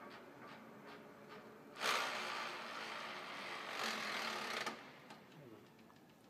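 Rosa vertical milling machine ticking faintly and regularly, about two or three ticks a second. About two seconds in, a loud rushing noise starts suddenly, lasts about three seconds and cuts off.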